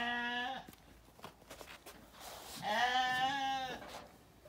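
Zwartbles sheep bleating twice: a short bleat at the start, then a longer, wavering bleat from a little past halfway to near the end.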